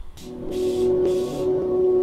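Background hip-hop track starting up: a steady held low synth note with regular blocks of hiss over it.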